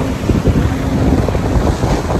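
Wind buffeting the microphone over the rush of water as an IMOCA 60 ocean-racing yacht sails fast through the sea, with a faint low steady hum that stops a little past a second in.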